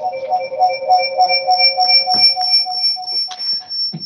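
Electronic alarm-like beeping coming over a video-call line: several steady pitches at once, pulsing a few times a second. The lower pitches drop out near the end while the highest keeps going.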